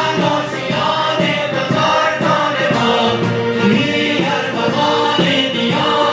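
A choir singing a song with a live band accompanying.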